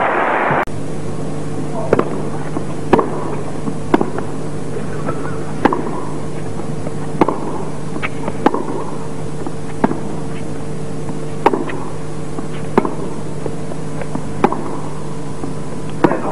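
Tennis racket strikes on the ball in a hard-court baseline rally: about ten sharp pops, one every second or so, over a steady low hum. Crowd noise cuts off suddenly less than a second in.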